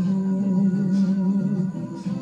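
Music playing for the dancers: a song in which one long note, sung or hummed, is held over the instruments and breaks off shortly before the end.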